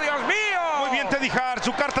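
A man talking excitedly in Spanish: television commentary on a wrestling match.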